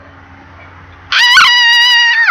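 A person's high-pitched squeal, starting about a second in, held on one steady note for about a second and dropping in pitch as it ends, with a short knock partway through.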